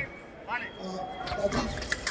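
Fencing shoes squeaking twice on the piste as sabre fencers move, then a quick run of sharp clicks and clashes of footwork and sabre blades as they close into an exchange, with voices among them.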